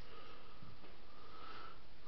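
A person sniffing: a faint breathy intake through the nose with a thin whistle, strongest about a second and a half in, after a faint click at the start.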